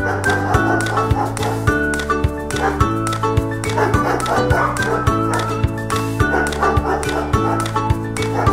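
Several short bouts of dog barking laid over upbeat ukulele background music with a steady beat.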